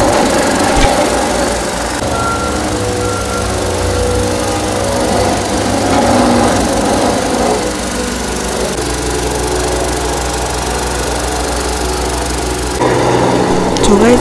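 Small walk-behind double-drum road roller's engine running steadily as it compacts a fresh asphalt patch. Its note shifts slightly about nine seconds in and grows louder near the end.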